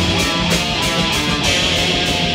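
Thrash/metalcore band playing live, picked up by room microphones: electric guitar riffing over bass and steady, fast drum hits.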